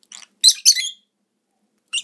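Lovebirds giving two short, high-pitched squawks in quick succession about half a second in.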